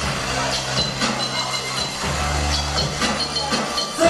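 Live band dance music amplified through a PA, a steady bass line running under it, with the noise of a dancing crowd in the hall.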